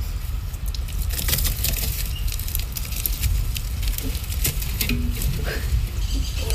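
Live snakehead murrel fish flopping and thrashing in the wet, making an irregular wet patter of slaps and clicks over a low steady rumble.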